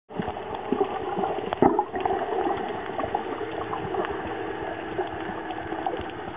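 Water sound as heard on a diving camera: a steady muffled wash with many scattered clicks and crackles, and a faint steady hum from about halfway through.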